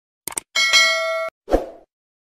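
Subscribe-button animation sound effect: a quick double mouse click, then a bright bell-like ding that rings for under a second and cuts off suddenly, followed by a short whoosh with a low thump.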